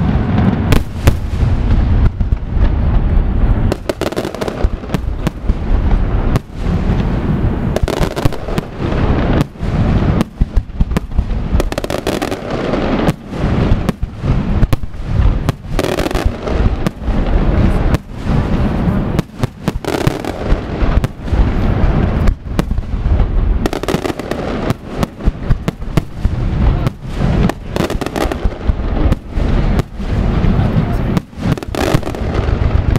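Aerial firework shells bursting in rapid, unbroken succession, a dense run of many sharp bangs a second from a large pyrotechnic display.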